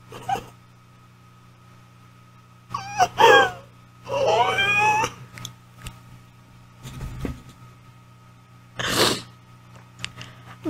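A woman's high-pitched, wordless whimpering squeals: a short one about three seconds in and a longer wavering one around four to five seconds, then a sharp breathy exhale near nine seconds, over a steady low electrical hum.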